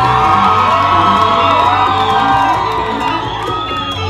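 Audience cheering and whooping over loud salsa music. The many voices are strongest in the first three seconds, then thin out, with one more whoop near the end.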